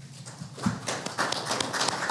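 Small audience applauding with scattered, overlapping claps, beginning about half a second in and filling out.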